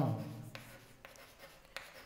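White chalk writing on a chalkboard: faint scratches and light taps of the chalk strokes as a word is written out.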